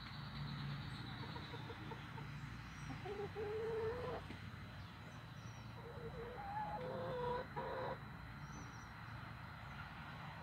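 Domestic hens clucking: a drawn-out call about three seconds in and a cluster of short calls around seven to eight seconds, over a steady low background hum.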